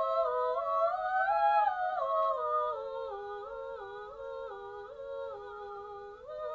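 Two sopranos singing a duet in close parallel harmony, long held notes that climb a little in the first two seconds and then step down one note at a time.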